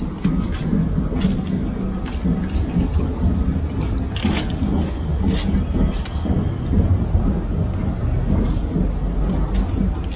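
Steady low rumble of wind buffeting an outdoor microphone, with a few short sharp clicks.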